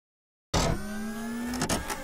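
Short edited-in sound sting for the end card: a steady hum with overtones that rises slightly in pitch, with a few sharp clicks near the end. It starts abruptly about half a second in and is cut off suddenly.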